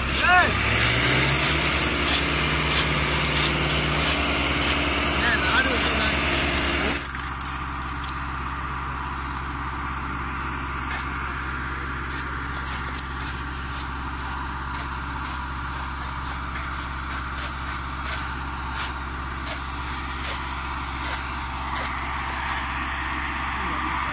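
An engine running steadily, its pitch rising just after the start and then holding, with the sound dropping and changing abruptly about seven seconds in; voices in the background.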